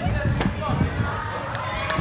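Several dull thuds of a gymnast's feet and body landing on a padded tumbling track, echoing in a large sports hall.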